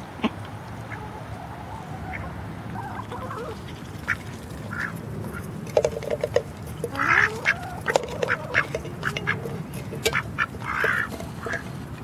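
Domestic ducks feeding, with a few loud quacks in the second half among softer calls, over quick sharp clicks of bills pecking at food, some of it in a tin can.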